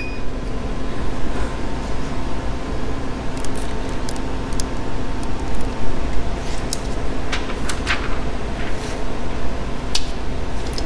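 Steady low room hum, with a few short crinkles and clicks of paper being handled as the protective sheet and the sublimation transfer paper are lifted off the freshly pressed fabric, in two clusters around the middle and a last one near the end.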